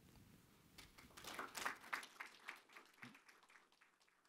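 Faint, sparse applause from an audience, starting about a second in and dying away before the end.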